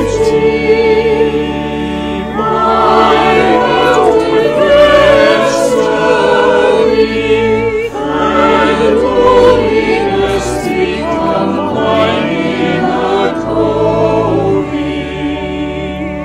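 Choir singing a sacred piece in several parts, over low sustained accompaniment notes that change every second or two.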